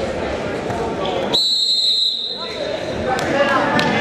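Gymnasium crowd chatter and shouting around a wrestling mat, cut by a single high, steady whistle blast of about a second, a little over a second in. A few sharp knocks follow near the end.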